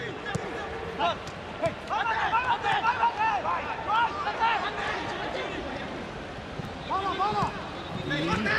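Footballers' shouts and calls on the pitch of an empty stadium, with no crowd noise: a burst of short calls that rise and fall in pitch in the middle, and two more near the end. A few sharp knocks of the ball being kicked are mixed in.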